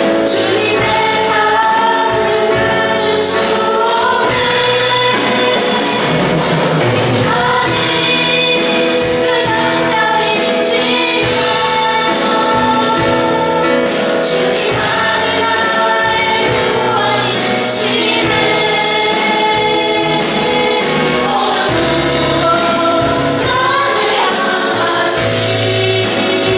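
A worship team of men and women singing a Chinese praise song together into microphones, over instrumental accompaniment with a steady drum beat.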